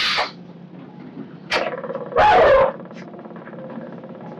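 An elderly woman crying in distress: a gasping breath at the start, then a loud wailing sob about two seconds in.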